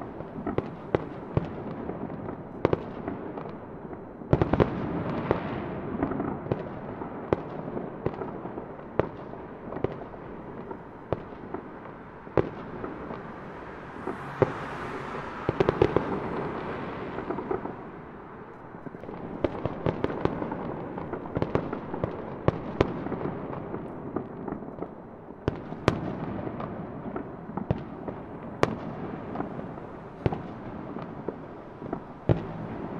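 Fireworks going off: a continuous run of sharp pops and crackles over a steady noisy wash, with a rising hiss about halfway through.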